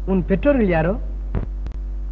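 A man's voice in the first second, over a steady low electrical hum on the old film's soundtrack. Two sharp clicks, with a momentary dropout, come about one and a half seconds in.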